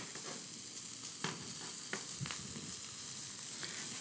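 An egg sizzling as it fries in a nonstick skillet with no oil, with a few faint clicks along the way.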